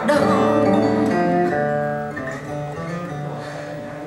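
A recorded song played back through a Rogue Audio Cronus Magnum III tube amplifier and JBL L100 Classic loudspeakers. A guitar chord struck at the start rings on and fades away between the singer's lines.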